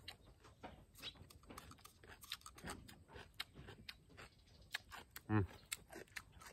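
A person chewing a mouthful of crisp raw cucumber, a faint run of irregular crunching clicks. A short hummed 'uhm' comes near the end.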